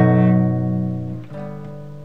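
A B7 chord strummed on a nylon-string classical guitar, ringing and slowly fading; a little over a second in the ringing is cut off and the chord is strummed again, more softly.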